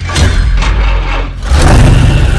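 Loud engine roar with revving: a rough, noisy roar that starts suddenly, with a heavier low rumble surging in about one and a half seconds in.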